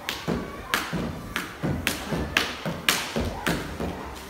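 Skipping rope slapping a hard floor in a fast, steady rhythm, about four strikes a second, as a skipper jumps continuously in a timed speed-skipping run.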